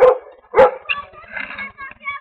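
A dog barking twice, loud and sharp, the second bark about half a second after the first, with voices after.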